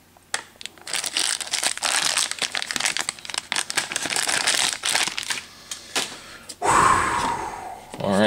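Plastic and foil toy packaging crinkling in the hands, a dense crackle of small rustles, with one louder, heavier crinkle or rip about two-thirds of the way through.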